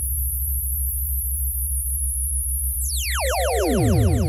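Electronic sound-collage music: a steady low throbbing pulse under high, rapidly repeating falling chirps. About three seconds in, a sweep dives from very high to low pitch, and repeating falling sweeps and a warbling middle tone follow.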